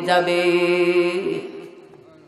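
A man's voice chanting a sermon in the melodic waz style, holding one long note that fades out a little past the middle.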